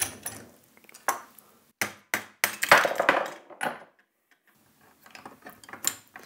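Metal hardware of a Pearl Eliminator kick drum pedal clinking and knocking as it is handled and fitted together by hand: a string of separate clinks, the loudest cluster about halfway through, then a brief lull and a few faint clicks near the end.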